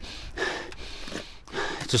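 A person sniffing through the nose, smelling a mouldy car interior, about half a second in. Speech starts just before the end.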